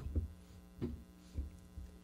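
Steady electrical mains hum, with faint low rumbles coming and going and a few faint short sounds.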